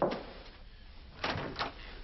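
A door shutting with a thud, followed a little over a second later by two softer knocks.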